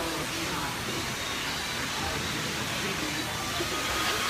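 Indistinct chatter of several people talking over a steady noisy hubbub, with no clear words.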